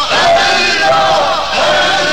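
A group of men's voices chanting together in long, held phrases, part of a Persian devotional naat.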